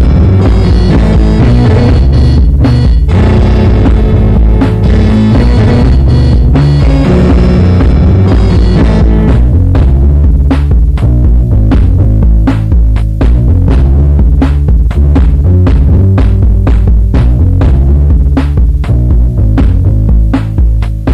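Electronic track from a Roland Boss DR-5 Dr. Rhythm Section drum and tone machine, recorded to cassette, with a heavy bass line. About nine seconds in the sustained higher tones drop out and quick drum-machine hits come to the fore over the bass.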